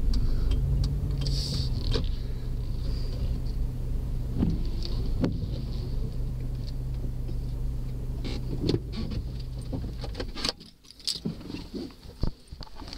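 Car interior: a steady low engine and road drone with scattered light clicks and rattles. It cuts off abruptly about ten and a half seconds in.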